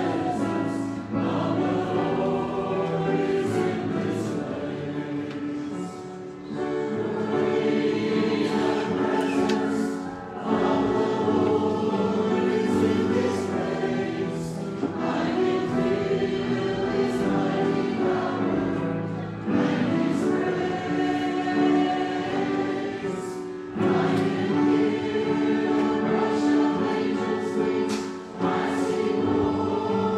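A church choir of men's and women's voices singing a hymn together, in sustained phrases broken by short pauses for breath every few seconds.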